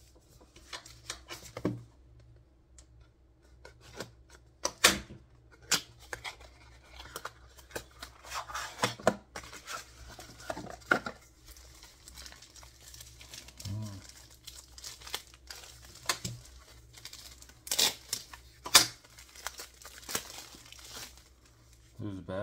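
Hands opening a cardboard box and pulling a drone battery out of its plastic sleeve: irregular tearing, crinkling of plastic film and sharp snaps of cardboard, loudest in bursts about five seconds in, around nine seconds and again near the end.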